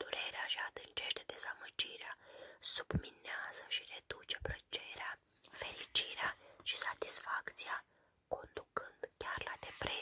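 A woman reading aloud in a hoarse whisper, her voice almost gone from severe laryngitis.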